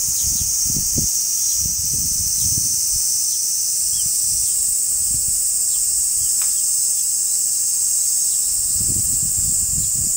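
A steady high-pitched insect chorus drones from the summer trees. Gusts of wind rumble on the microphone in the first few seconds and again near the end.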